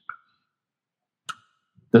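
A pause in the conversation: near silence with a couple of faint, brief clicks, then a man's voice begins speaking near the end.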